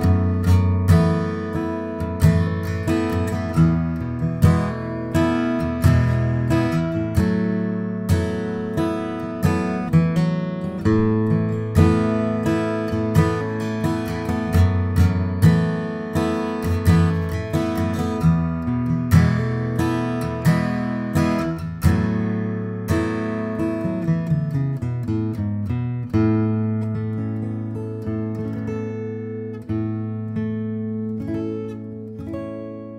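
1941 Gibson J-55 mahogany flat-top acoustic guitar played solo, strummed and picked in a steady rhythm of chords and bass notes. The playing slows to a few ringing notes near the end.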